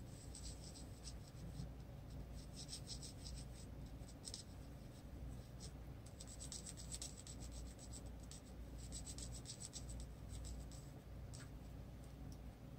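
Prismacolor colored pencil shading on paper, faint and scratchy: quick short strokes that come in runs of half a second to a second and a half, with brief pauses between runs.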